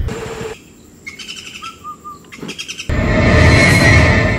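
Birds calling with short, repeated chirps in a quiet stretch. Near the end a loud rushing swell comes in.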